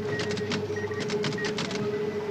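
Electronic supermarket till at work: rapid clicking clatter of its printer in quick clusters, with short high beeps over a steady hum.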